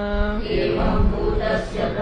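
Sanskrit text chanted in a steady recitation tone: a held note ends about half a second in, then several voices chant the line together, as a class repeating it.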